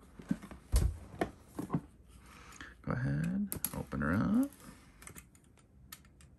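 Irregular clicks and crinkles of plastic shrink-wrap being worked at with a retractable utility knife to open a board game box. A man's voice murmurs briefly twice in the middle.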